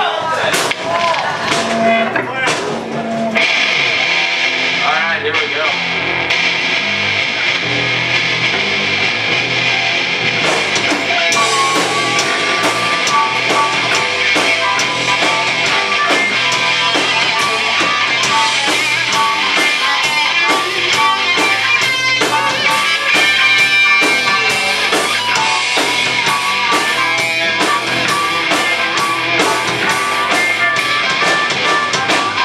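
Live blues-rock band jamming: electric guitar and drum kit, with a harmonica played through a vocal microphone wailing over them.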